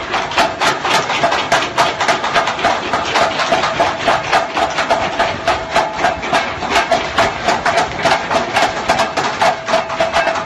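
Rapid, continuous banging or striking, about five strikes a second, over a steady ringing tone.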